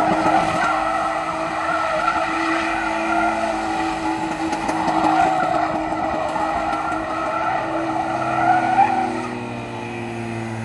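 A BMW E36 coupe doing burnout donuts. The engine is held at high, steady revs while the spinning rear tyres squeal against the tarmac, and the revs and squeal drop off about nine seconds in.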